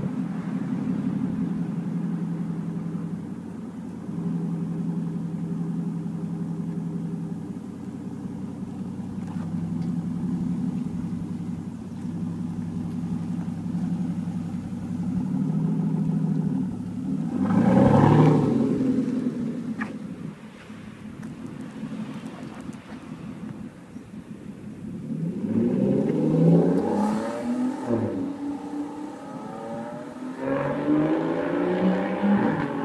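2013 Aston Martin Vanquish V12 idling steadily through its exhausts. About 17 s in it revs sharply once. Near the end it revs up and down several times.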